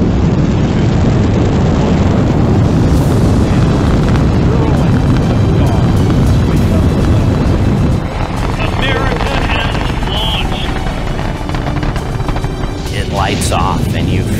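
Rocket engines at liftoff: a heavy, dense low rumble that breaks off sharply about eight seconds in to a quieter, thinner rumble.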